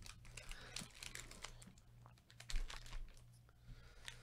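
Foil trading-card packs crinkling and tapping as gloved hands handle one and set it down on the table: a faint scatter of light clicks and rustles.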